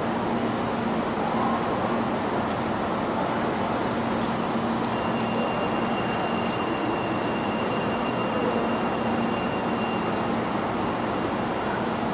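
Steady rushing background noise of an airport terminal hall with a constant low hum; a thin high whine holds for about five seconds in the middle.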